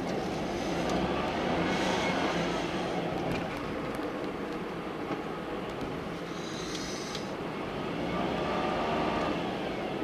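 Steady road and engine noise of a moving car, heard from inside its cabin, with a brief high hiss about two-thirds of the way through.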